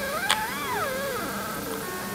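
Stepper motors of a two-wheeled self-balancing robot whining as the robot turns round, the pitch rising and then falling with wheel speed over a steady faint hum. There is a brief click about a third of a second in.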